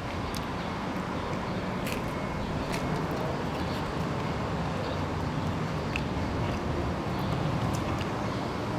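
Steady low rumble of street traffic, with a few faint crisp crunches from a thin, crispy pizza slice being bitten and chewed.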